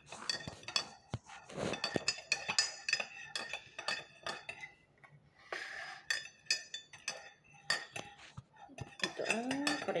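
Metal spoon stirring a drink in a ceramic mug, clinking against its sides in quick repeated strikes, with scattered clinks continuing afterwards.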